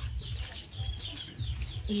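Chickens clucking in the background, a few short calls.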